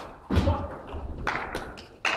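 Table tennis ball being played in a large hall: a sharp hit at the start, a heavy thud about a third of a second in, then a few quick sharp clicks of the ball in the second half.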